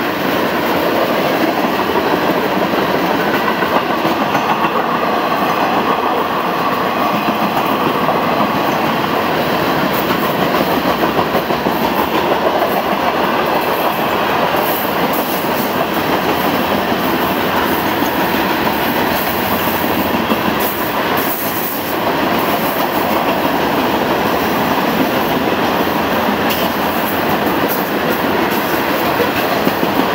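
Freight cars of a Florida East Coast Railway train rolling past close by at about 30 mph, tank cars followed by loaded rock cars: a steady sound of steel wheels running on the rails.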